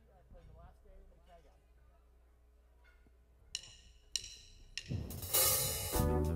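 Faint talk, then about three and a half seconds in, three ringing metallic strikes from a jazz drummer's kit, followed near the end by a loud cymbal swell leading into the band's opening chord.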